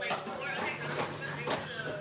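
Low voices in the room, with four light taps or knocks about half a second apart.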